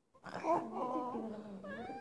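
A toddler fussing with drawn-out, wavering cries that end in a rising whine.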